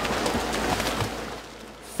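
Water splashing and hissing as many Asian silver carp leap from the river and fall back around a moving boat, with a low motor rumble underneath; the sound fades after about a second.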